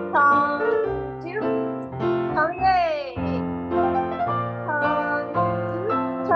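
Live piano accompaniment for a ballet exercise, chords changing about every half second. A voice slides down in pitch over it a few times.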